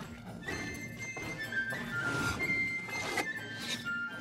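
A flute playing a slow melody of held high notes over the cartoon's background music, with several thuds from a giant monster's footsteps.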